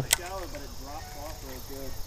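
A person's voice talking faintly and indistinctly, with a single sharp click just after the start.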